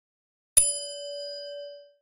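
A single bell ding sound effect, a notification chime for the bell icon. It is struck once about half a second in and rings out, fading away over about a second and a half.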